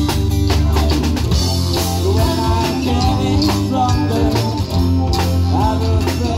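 Live rock band playing a song: drum kit, electric bass, guitar and organ together at a steady beat.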